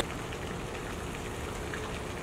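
Steady, even hiss of background noise with a few faint ticks.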